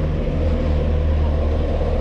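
Heavy crane truck's diesel engine running steadily with a low, even hum.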